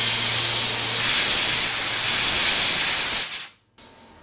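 A jewelry steam cleaner's nozzle blasting a jet of pressurised steam: a loud, steady hiss that cuts off suddenly about three and a half seconds in.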